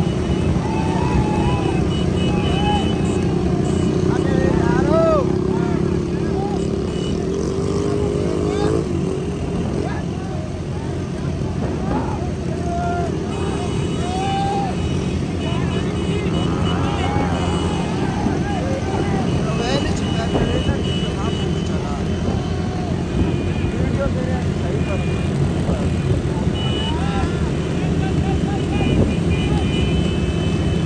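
Many small motorcycle engines running together in a dense, steady drone, with men shouting and calling out over them throughout.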